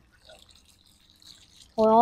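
Faint, scattered dripping and trickling of water from freshly washed roots, heard in a near-quiet pause, with a woman's voice starting up again near the end.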